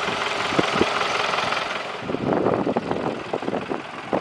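Steady outdoor background noise, an even hiss-like rush, with a few short knocks a little after half a second in.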